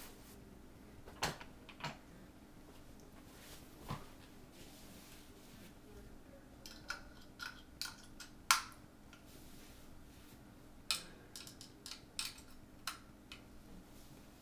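Scattered small clicks and taps from objects being handled, the sharpest a little past the middle and a quick run of them near the end, over a faint steady low hum.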